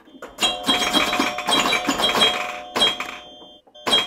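Sound effects of an animated logo intro: a rapid flurry of clicks and pops mixed with bell-like chiming tones, then one sharp hit near the end with a chime ringing on after it.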